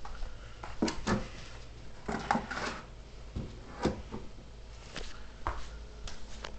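A scattered series of light knocks and clicks, about seven or eight over several seconds, like objects being handled and set down.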